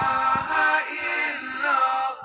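Zikir (Islamic dhikr) chanting: a sung voice holding long, slowly gliding notes over music, with a few soft low knocks underneath.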